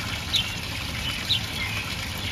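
Steady splashing of water pouring down a stacked wooden-barrel garden fountain.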